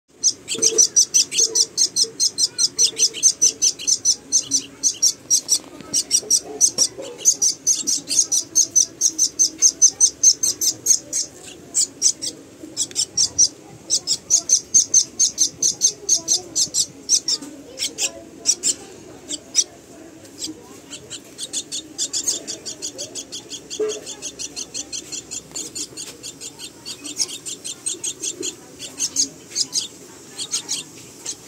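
Common myna nestlings begging for food with rapid, high-pitched calls, about five a second, in runs of several seconds with short breaks. The calls are softer in the last third.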